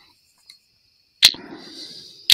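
Two sharp clicks about a second apart, close to the microphone, with a rustle between them, over a faint steady high-pitched tone.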